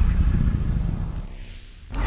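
A low rumbling sound effect that fades away over the second second, ending in a brief lull just before a new loud sound starts.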